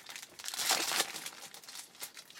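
Foil wrapper of a 2012 Topps Platinum football card pack crinkling as hands open it, loudest about half a second in.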